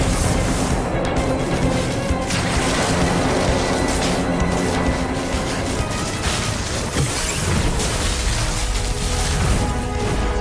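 Loud, dramatic action-scene music, with booms and crashing sound effects over it.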